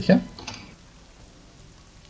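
Steady soft rain ambience. A brief spoken question sits over it at the start.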